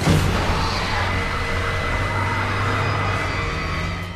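A car engine revving hard as the accelerator pedal is floored, mixed with dramatic film score. It comes in suddenly and stays loud and steady.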